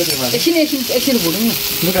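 A paste frying in oil in a small wok, sizzling with a steady high hiss, while a steel spoon stirs it. A person's voice runs over the sizzle.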